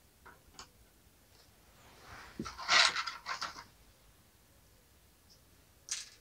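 Small plastic toy pieces being handled and set down on a table: a couple of faint clicks, then a short burst of louder rustling and scraping around the middle.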